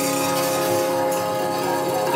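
Harmonium holding steady chord notes, with tabla accompaniment.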